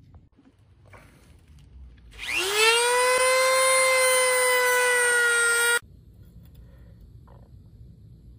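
Corded Dremel rotary tool spinning up with a quickly rising whine, then running at a steady high pitch while trimming the edge of a piece of ABS plastic sheet. It cuts off suddenly.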